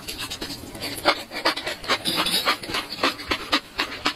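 Close-miked chewing of enoki mushrooms in chili sauce: a quick run of short, wet crunching sounds, several a second, growing stronger about a second in.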